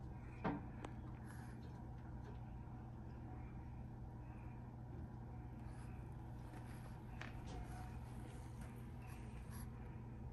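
Quiet room tone with a steady low hum and a few faint, short ticks.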